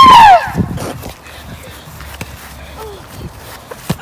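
A boy's loud cry of "Oh!" falling in pitch at the start, then quieter scuffling of feet on grass and a sharp knock near the end as the football is kicked.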